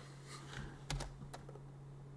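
A few light clicks of computer keys, bunched about a second in, over a faint steady low hum.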